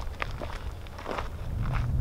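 A few footsteps scuffing on dirt and gravel as people walk off.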